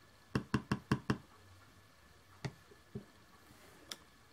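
Clear acrylic stamp block tapped against a Stampin' Up ink pad to ink a rubber stamp: a run of five quick taps about a second in. A few single knocks follow later, as the stamp is pressed onto cardstock.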